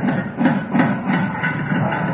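Loud festive temple ceremony music mixed with crowd din, with a regular beat of strokes about three a second.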